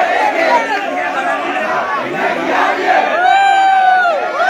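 A crowd of protesters shouting, many voices at once. About three seconds in, one long held shout rises above the rest.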